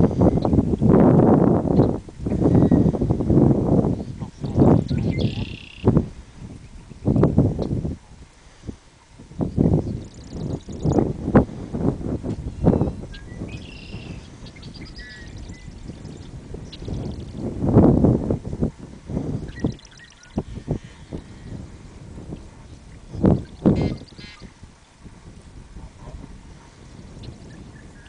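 Wind buffeting the microphone in irregular gusts, loudest in the first few seconds, with faint bird calls now and then between the gusts.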